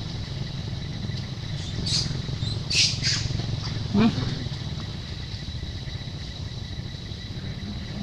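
A few short, high-pitched squawking animal calls about two to three seconds in, then a shorter call sliding down in pitch at about four seconds. Under them runs a steady low hum and a steady thin high tone.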